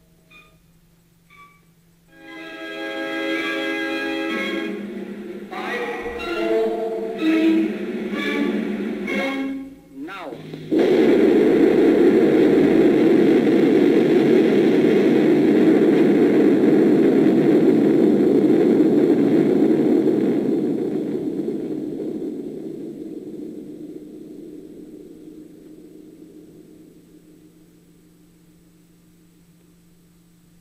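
Film-soundtrack music with sustained notes, then, about ten seconds in, the sudden loud roar of a nuclear test explosion. The roar holds for about ten seconds, then fades away slowly.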